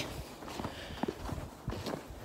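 Faint footsteps of a person walking, soft irregular steps with light ticks.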